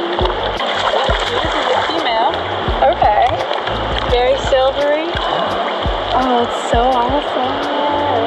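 Shallow river water splashing and running around wading legs and a landing net as a hooked landlocked salmon is brought to the net, with excited voices over it.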